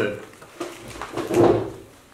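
A paper worksheet handled and rustled as it is lifted toward the microphone: a short rustling scrape that swells about a second and a half in and then fades.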